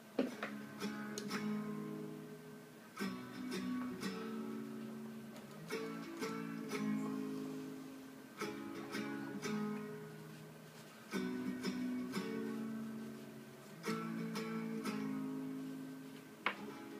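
Acoustic guitar music: plucked notes and chords, each struck phrase ringing out and fading before the next, which comes every second or two.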